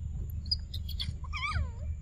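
A macaque calling: a few short high chirps, then a whining call that falls in pitch, over a steady low hum.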